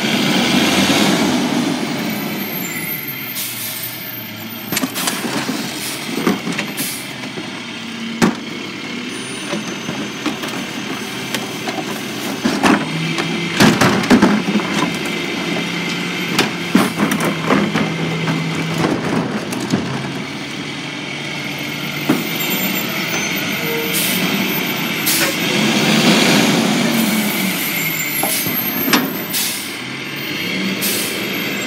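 Rear-loader garbage truck running at the curb while its crew empty plastic garbage toters into the hopper by hand. The engine and packer hydraulics run throughout, under repeated sharp knocks and bangs of carts and lids against the hopper.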